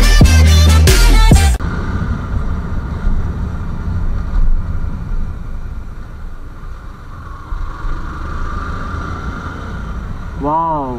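Music that stops suddenly about one and a half seconds in, followed by the steady running of a Yamaha YZF-R15's single-cylinder engine with wind and road noise as the motorcycle is ridden.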